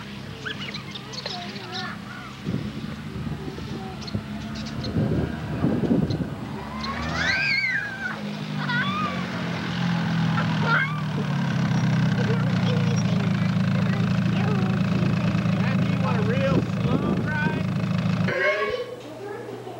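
A four-wheeler (ATV) engine running as it drives up, growing louder over the first half and then running steadily close by. Children's squeals and calls sound over it, the loudest about seven seconds in.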